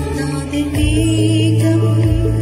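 A woman singing a Christian gospel song into a handheld microphone, holding long notes over instrumental accompaniment whose low notes shift about three quarters of a second in.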